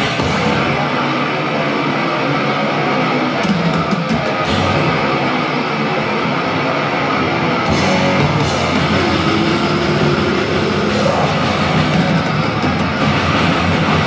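Heavy metal band playing live and loud: distorted electric guitars, bass guitar and drum kit, with cymbal crashes near the start, about four and a half seconds in and about eight seconds in.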